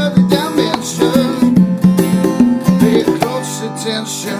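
Acoustic guitar played in a rhythmic instrumental passage, with hand percussion from a Roland HandSonic 10 electronic drum pad.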